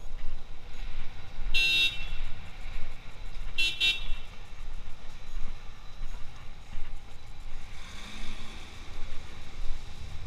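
A vehicle horn sounding two short toots, the first about a second and a half in and the second, a quick double beep, about two seconds later, over steady low street rumble.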